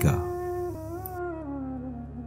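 Soft background devotional music: a single held melody line slides slowly downward in pitch over a low steady drone.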